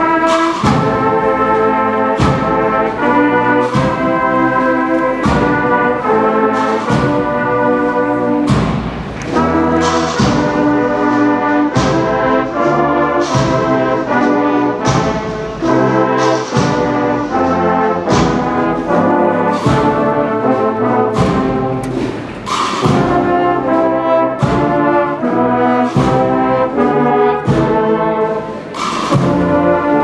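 Agrupación musical (Spanish processional brass band) of trumpets, trombones and low brass playing a slow processional march in full sustained chords, punctuated by percussion strokes.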